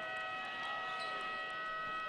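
Basketball arena horn sounding one steady, multi-tone blast that signals a stoppage in play.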